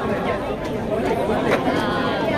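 Chatter of a dense crowd of pedestrians: many voices talking at once, overlapping at a steady level.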